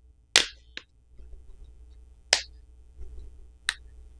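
Plastic catches of a Tecno Pova 2's back housing snapping loose as a plastic pry pick is worked along the seam between the back cover and the frame. There are four sharp clicks, the loudest about a third of a second in and just after two seconds, with smaller ones between.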